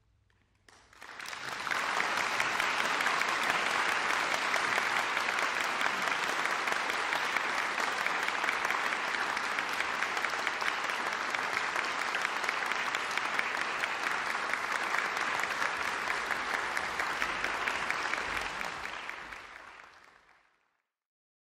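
Audience applauding steadily, starting about a second in after a moment of silence, then fading out near the end.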